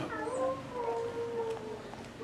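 A man's voice making a soft, drawn-out whine that rises slightly and then holds steady for over a second.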